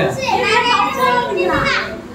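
Excited voices talking and laughing.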